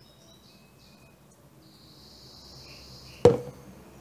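Faint, thin hiss in two spells as hydrogen peroxide developer is squeezed out of a plastic squeeze bottle, then a single sharp click a little after three seconds in.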